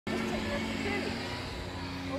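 Electric motors of an off-road Segway-style self-balancing scooter whining in a steady low tone as it rolls along, with tyre noise underneath.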